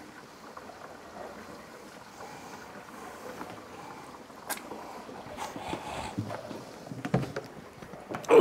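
Steady water-running noise from a reef aquarium's overflow and sump, still noisy while the drain's gate valve is being tuned. A sharp knock comes about halfway through, followed by rustles and clunks of a plastic hose and water container being handled.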